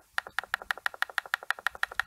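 Computer mouse scroll wheel clicking through its notches in a fast, even run, about ten clicks a second.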